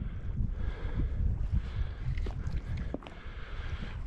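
Wind rumbling on the microphone and water against a plastic kayak hull, with a few faint clicks or knocks.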